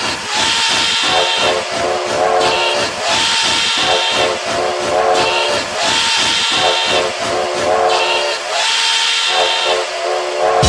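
Vogue house track in a drumless breakdown: held synth chord tones under a high, hissing, whistle-like phrase that repeats about every three seconds, with no kick drum.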